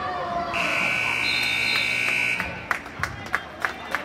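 Gymnasium scoreboard buzzer sounding one steady electronic tone for about two seconds, starting half a second in, over crowd chatter. A run of sharp knocks follows near the end.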